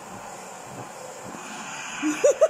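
Vacuum cleaner running steadily, its hose nozzle passed over a cat's fur.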